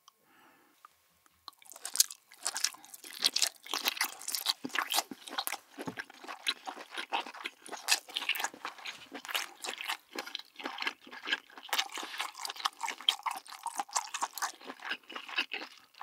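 Close-miked chewing of a whole braised abalone: a dense run of crisp, wet mouth clicks that starts about two seconds in and goes on steadily.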